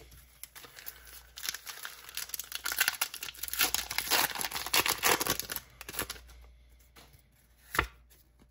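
A foil Pokémon Scarlet & Violet 151 booster pack wrapper is torn open by hand, crinkling and tearing for about four seconds from a second and a half in. A single short sharp click comes near the end.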